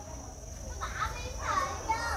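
Faint background voices starting about a second in, over a steady faint high-pitched tone.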